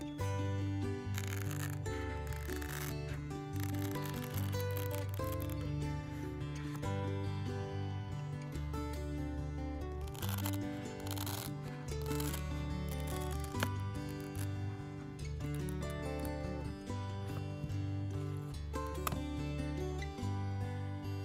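Background music with a steady bass line throughout. Over it, scissors snip through a thick, stiff whale fin sansevieria leaf a few times, at about one, ten and thirteen seconds in.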